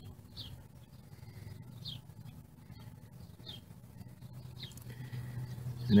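A small bird chirping in the background: four short, high chirps about a second and a half apart, over a faint steady low hum.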